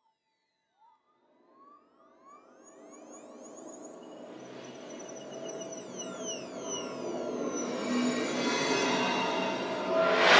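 Synthesizer intro of a psychedelic trance mix: silence at first, then from about two seconds in, electronic tones glide up and down in pitch over a swelling drone that grows steadily louder.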